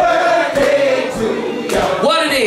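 Several voices singing together, holding long, sliding notes.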